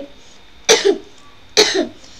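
A woman coughing twice, two short sharp coughs about a second apart.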